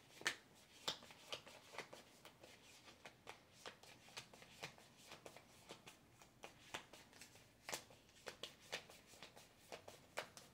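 A deck of tarot cards being shuffled by hand: a faint, continuous run of short card snaps and slides, about two or three a second, with the sharpest snap just after the start.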